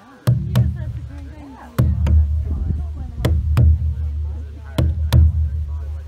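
Large laced rawhide drum struck in a heartbeat rhythm: four pairs of deep, ringing beats, two quick strokes to each pair and a pair about every one and a half seconds.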